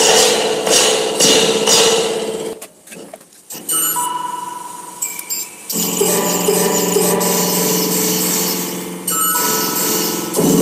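Experimental noise played through a spring reverb tank: rattling, crashing spring bursts about twice a second with ringing tails, then a sudden drop-out. After that come layered electronic tones that build into a dense, buzzing drone.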